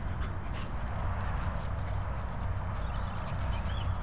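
Two dogs, an English Pointer and a cocker spaniel, playing on grass: scattered light scuffling sounds and a short high whine near the end, over a steady low rumble.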